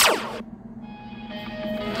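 A time-travel sound effect: a quick zap that sweeps down in pitch over about half a second. About a second in, held musical notes fade in and slowly swell.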